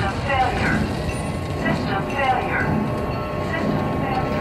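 Soundtrack of a television drama: a continuous low rumble with pitched sounds that fall in pitch, once near the start and again about two seconds in.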